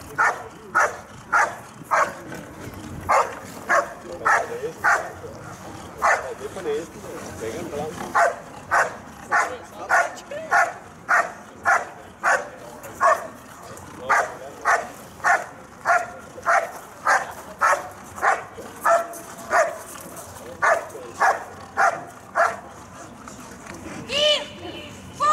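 Protection dog barking at a helper hidden in the blind during the bark-and-hold exercise: loud, rhythmic barks at about two a second, with a brief lull about a quarter of the way through.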